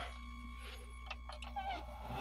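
Low, steady hum of a Pentair IntelliFlo variable-speed pool pump that has just been powered back up, with a few faint ticks and a brief faint chirp near the end.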